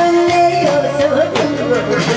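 A woman singing into a microphone over loud backing music. She holds notes with a wavering vibrato.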